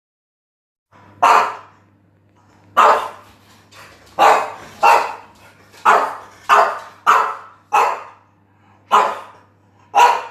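A French bulldog barking: about nine single, sharp barks spaced unevenly, starting about a second in.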